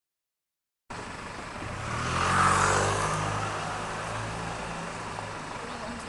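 A road vehicle's engine running close by. It cuts in abruptly about a second in, grows loudest a second or so later, then settles to a steady hum.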